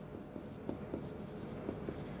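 Marker pen writing on a whiteboard: a series of faint, short strokes.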